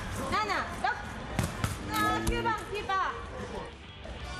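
A blind football guide behind the goal shouting short calls to a blindfolded attacker, telling him the distance to the goal. A couple of sharp thumps of the ball come about a second and a half in.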